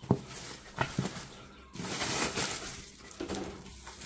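Dry straw rustling and crackling as it is handled and pushed into an empty glass aquarium, with a few sharp clicks in the first second and a longer rustle in the middle.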